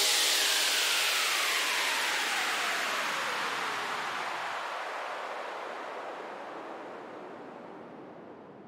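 Closing noise-sweep effect of an electronic dance remix: a falling whoosh of hiss that fades steadily away after the music cuts off.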